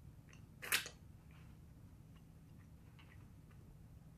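A person chewing a small piece of veggie burger: quiet, soft mouth clicks at irregular intervals, with one louder short noise under a second in.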